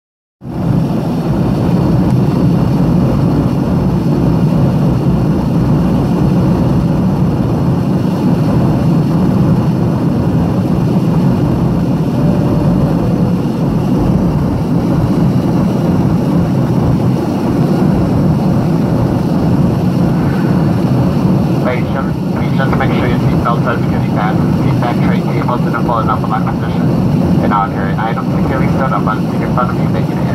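Steady cabin noise of a Boeing 737 airliner in flight, its engines and rushing air heard from a window seat inside the cabin. A voice comes in over the noise about twenty seconds in.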